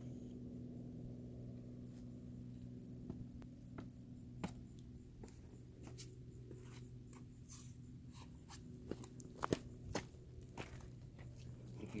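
Faint steady low hum with scattered small clicks and crunches, sparse at first and more frequent toward the end, the strongest a few seconds before the end.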